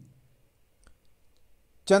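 A few faint, sharp clicks in an otherwise near-quiet pause, with a man's voice trailing off at the start and coming back in near the end.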